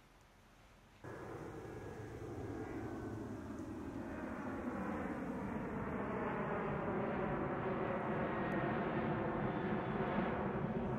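Airplane engine drone that starts abruptly about a second in and grows steadily louder, its pitch sagging slowly as it passes.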